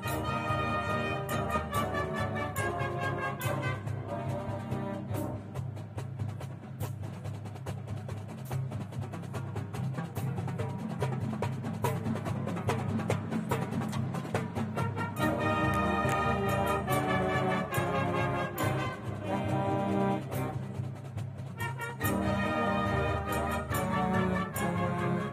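High school marching band playing: brass with marching drums and front-ensemble mallet percussion. In the middle the horns thin out into a quieter, drum-led passage, and the full band comes back in about fifteen seconds in.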